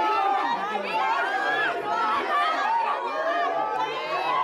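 A crowd of people all talking at once, many voices overlapping in a steady hubbub of chatter.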